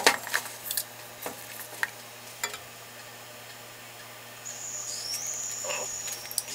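Light clicks and taps from handling a dye syringe in and around a pot of wet wool roving, several in the first two and a half seconds. Near the end comes a thin, high squeak that rises slightly.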